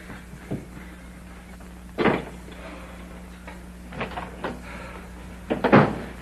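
A door being shut with a sharp knock about two seconds in, followed by a few lighter knocks and clatters, over the steady low hum of an old film soundtrack.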